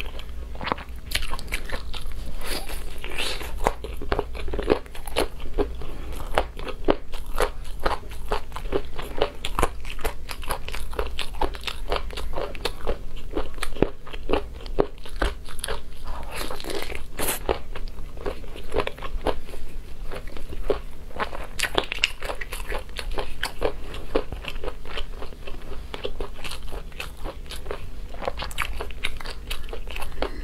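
Close-miked eating of sauce-glazed ribs: biting and chewing meat off the bone, with many quick clicks and small crunches.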